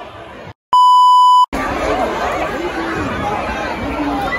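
A short electronic beep at one steady pitch, about three-quarters of a second long, about a second in. It starts and stops abruptly after a brief dropout in the audio, like an edited-in censor bleep. Around it, a gym crowd chattering and shouting.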